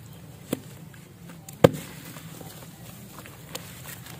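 Blocks of dried red dirt being crushed and broken apart by hand in a basin of muddy water. There are sharp cracks about half a second in and, loudest, just after a second and a half, with a fainter one near the end.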